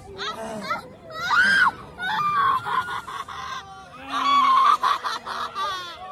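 Riders on a 360 Ranger swing ride screaming and shouting in high-pitched voices, loudest about one and a half seconds in and again around four to five seconds in.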